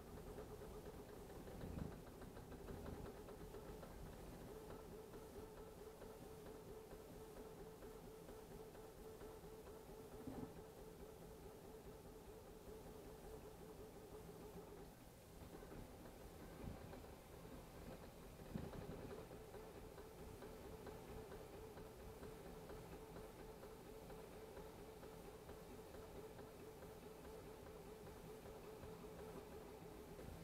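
Faint steady whine of a lead-screw 3D printer's stepper motors driving the print head at about 200 mm/s, with a fine warble as the head changes direction and a few soft knocks. The whine drops out for a moment about halfway through.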